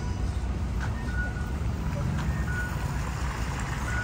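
Steady road-traffic rumble with a short, high beep repeating every second or so.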